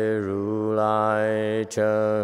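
A man's voice chanting Buddhist liturgy in long, drawn-out tones, with a brief pause for breath near the end.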